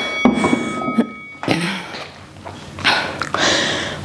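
A pair of metal dumbbells set down on a wooden plyo box, knocking a few times in the first second and a half. Heavy breathing follows after the set.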